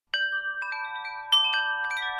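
Chimes ringing: bright metallic tones struck a few at a time, each ringing on and overlapping the next, starting suddenly out of silence just after the start.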